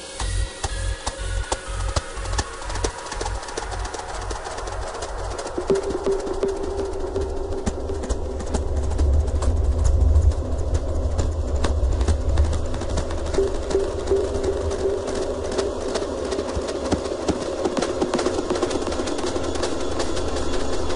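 Dark psychedelic techno in a breakdown. The steady kick drum drops out in the first couple of seconds, leaving a deep low drone with crackling clicks and a held mid-pitched tone that comes in about six seconds in, while the whole sound slowly builds.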